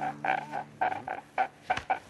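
A man sobbing in short, repeated gasping cries, several a second, with a low held music chord under the first second that fades out.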